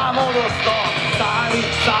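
Live rock band playing loud and steady: electric guitars and drums, with a male voice singing over them.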